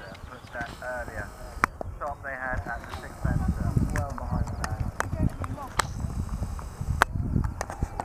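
Hoofbeats of a horse cantering on grass turf, dull low thumps that grow louder from about three seconds in as it passes close by, with a few sharp clicks mixed in.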